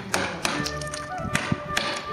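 Wooden mallet striking a wood-carving chisel as it cuts into a block of wood: about five sharp taps at uneven intervals, over background music.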